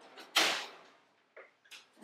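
Kitchen oven door pushed shut with one sudden clunk about a third of a second in, then a couple of faint knocks.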